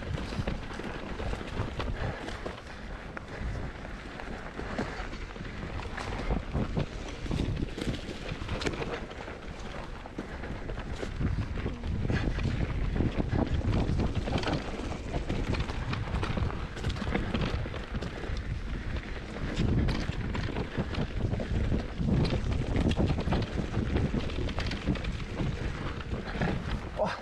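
Mountain bike riding down a bumpy forest dirt trail: tyres rolling over dirt and roots, the bike rattling and clicking over the bumps, with wind rushing over the microphone. The rumble gets louder in rougher stretches about halfway through and again near the end.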